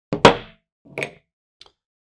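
Umarex Notos air tank set down on a wooden tabletop: a sharp knock, then a lighter knock about a second later.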